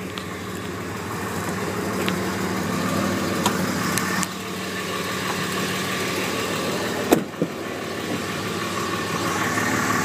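A 5.9L Cummins common-rail diesel idling steadily, with a single sharp click about seven seconds in.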